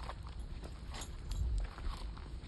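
Footsteps of two people walking on a gravel path, with scattered light crunches and ticks over a steady low rumble that is strongest just past halfway.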